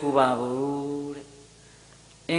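A Buddhist monk's voice, through a hand microphone, intoning one long syllable at a steady pitch in the manner of Pali chanting. The note fades out a little over a second in, leaving a quiet pause of room tone.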